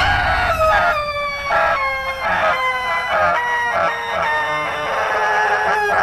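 A long, loud scream, electronically pitch-shifted and distorted, that bursts in suddenly out of silence and slowly falls in pitch, with repeated catches in it: a character waking from a nightmare screaming.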